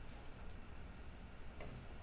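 Quiet room tone with a low steady hum and two faint ticks, about half a second in and again near the end.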